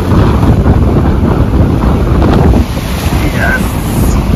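A car driving through a shallow stream, its tyres splashing and churning through the water, with heavy wind buffeting on the microphone.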